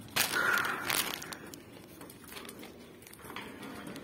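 Close rustling and crunching noise, loudest in a burst during the first second, then fainter rustling.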